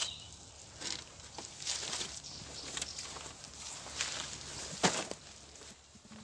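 Rustling and scattered light knocks of fishing tackle being handled and lifted out of a car boot, with a louder pair of knocks near the end.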